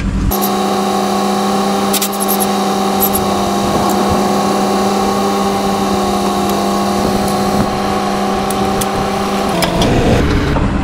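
A steady, unchanging engine-like drone with a clear pitch, with a few faint sharp clicks of tools on metal; it starts just after the beginning and cuts off abruptly near the end.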